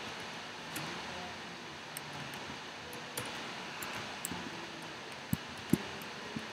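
Sparse computer keyboard keystrokes: faint clicks about a second apart over a steady hiss, with two louder knocks near the end.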